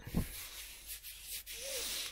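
Fabric first aid pouches and gear being handled and shifted, a steady rubbing, scuffing hiss with a soft thump just after the start.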